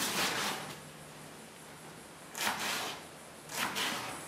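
Kitchen knife slicing through ripe tomatoes on a cutting board, three separate slicing strokes with short pauses between.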